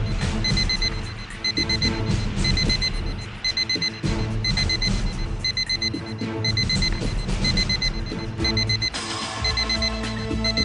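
Electronic alarm beeping in quick groups of four short pips, repeating about once a second, over tense background music. The beeping comes from a parked car's trunk and is feared to be a bomb.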